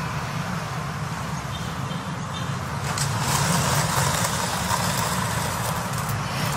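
Steady road-traffic noise with a low rumble, growing a little louder about three seconds in.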